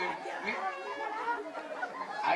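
Several voices talking over one another, no music.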